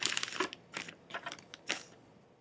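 A quick run of short scratchy rustling and crunching noises, about six in two seconds, from hands and tools working thread at a fly-tying vise during a whip finish.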